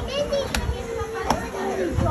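Background voices of children and other people talking, with two short sharp clicks, about half a second in and just past a second in.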